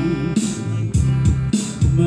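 Live music: a man singing into a microphone over acoustic guitar, with a steady beat striking about twice a second.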